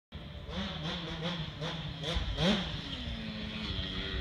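Kawasaki KX65 two-stroke dirt bike engine heard from a distance, its revs rising and falling in a quick regular pattern. There is a sharper rise about two and a half seconds in, then it holds steady.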